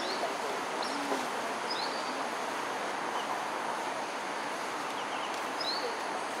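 Steady outdoor ambience with a handful of short, high chirps scattered through it.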